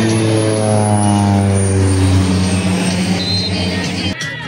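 A loud, steady engine drone whose pitch sinks slowly, cutting off suddenly at the end.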